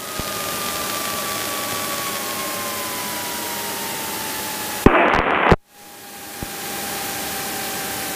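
Steady hiss-like noise in the cockpit audio of a Cessna 210 moving along the runway, its engine and airflow heard muffled under static, with a faint tone slowly falling in pitch. About five seconds in, a short burst of radio transmission cuts in, then the noise drops out briefly and fades back.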